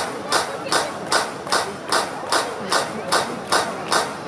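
A steady percussive beat from the PA: sharp, clap-like hits about two and a half times a second, over faint crowd chatter.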